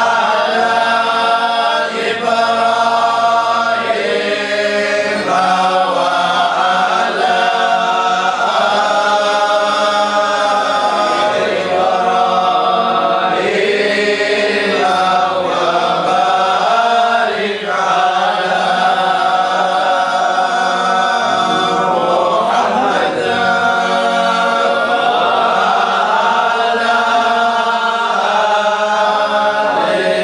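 Qadiriyah dhikr: a group of voices chanting together in long, melodic held lines that slide between notes.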